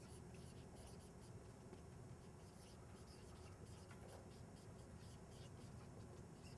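Faint scratching of writing, many short strokes in quick irregular succession, over quiet room tone.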